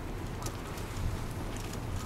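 Steady outdoor rumble and hiss, with a few faint clicks as the wire crab trap is handled on the wooden deck.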